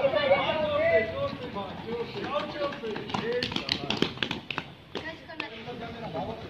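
Children's running footsteps, a quick irregular patter of short taps on packed dirt and a foam mat, after a burst of voices calling out at the start.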